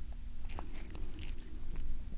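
A cat licking, close to a binaural microphone: a quick run of small clicks in the first second, thinning out toward the end.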